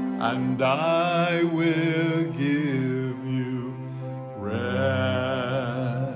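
A man singing a slow scripture line, 'and I will give you rest,' in three drawn-out phrases with vibrato. The last note is held to the end.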